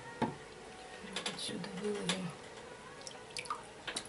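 Water dripping and splashing softly as a hand works inside a glass aquarium, with a few short sharp clicks.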